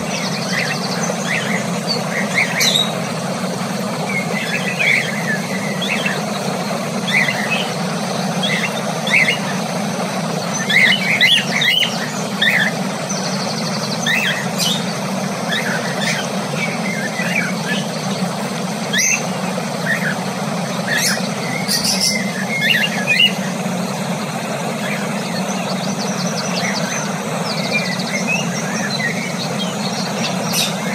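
Cockatiels chirping in short, scattered chirps and squeaks, over a steady low hum.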